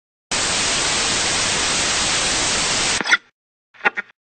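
Steady hiss of static-like white noise for about three seconds, cutting off abruptly, followed by two very short blips.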